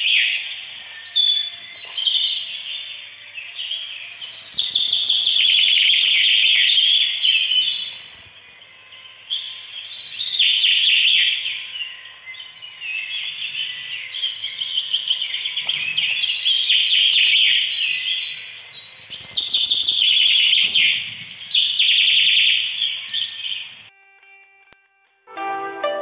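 Small birds chirping and twittering rapidly in loud, dense bouts, with brief lulls about 8 and 12 seconds in.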